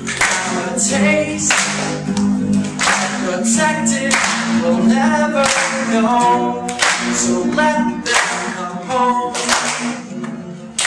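A song: voices singing a held, wordless melody over acoustic guitar, with sharp rhythmic strokes on the beat about once or twice a second.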